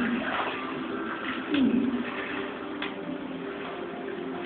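Quiet film soundtrack heard through cinema speakers in a pause between lines of dialogue: soft sustained background tones, with a brief low sound dipping and rising in pitch about one and a half seconds in.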